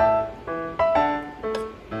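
Background music: a gentle melody of single struck notes, each fading away, about two notes a second.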